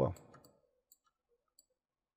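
Two faint computer mouse clicks, about a second in and again half a second later.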